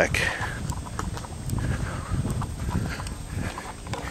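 Footsteps on bare dirt, irregular and uneven, with the rustle of a handheld phone camera being carried.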